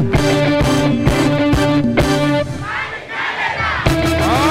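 Live band music at a concert, held chords over a steady drum beat, which drops away about two and a half seconds in, leaving the audience cheering and shouting.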